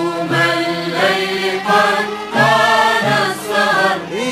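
Arabic orchestral music from an ensemble of ouds and violins, playing a melodic phrase of held notes that step from one pitch to the next.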